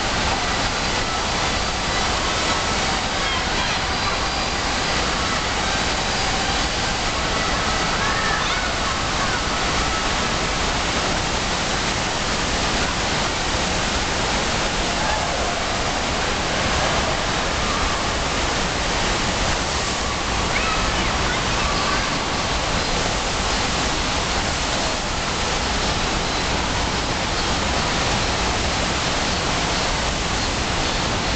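Steady rushing of water from an indoor surf machine: a fast sheet of pumped water racing up the padded wave surface and spraying over at the crest, an even roar with no pauses.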